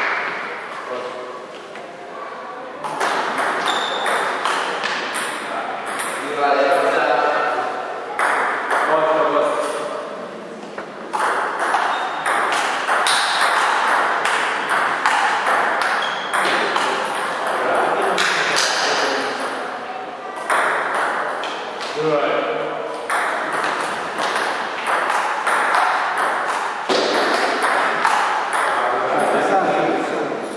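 Table tennis ball clicking back and forth between paddles and the table in a series of rallies, with short pauses between points. Voices can be heard in the background.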